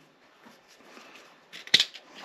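Faint handling of metal gearbox parts, then one sharp click near the end as a part comes off the old gearbox shaft.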